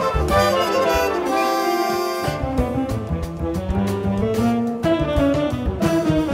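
A jazz big band plays a full-ensemble passage, with trombones and trumpets in front over bass and drums.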